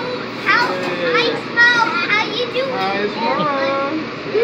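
Children's high-pitched, excited voices and squeals, rising and falling in pitch, over steady background noise.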